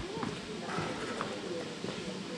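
Slow footsteps, a few scattered taps, under faint murmured voices.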